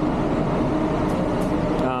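Electric mobility scooter creeping along at its slowest speed setting: a steady, faint motor whine over a constant background hum.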